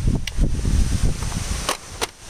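Wind buffeting the microphone, a loud low rumble, with two sharp clicks from hands handling a metal carpet sweeper: one just after the start and one near the end.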